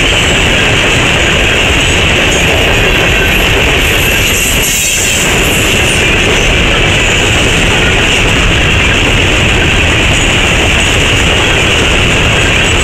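Loaded coal hopper cars of a unit coal train rolling past close by at about 40 mph: a loud, steady rumble and rattle of steel wheels on rail, with a brief dip about five seconds in.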